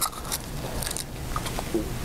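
A few faint clicks and scrapes as gloved hands open a plastic test-strip vial and take a strip out.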